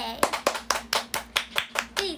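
Hand clapping: a quick, even run of about nine claps, roughly four to five a second.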